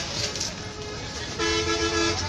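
A vehicle horn sounds once, a steady blare of two held notes lasting under a second, starting a little past the middle. Behind it is a constant background of voices and traffic noise.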